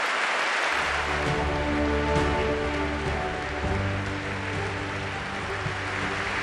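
Audience applauding, with music coming in underneath about a second in: long held notes over a deep, steady bass.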